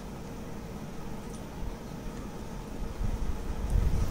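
Low background rumble with a faint steady hum, growing louder about three seconds in.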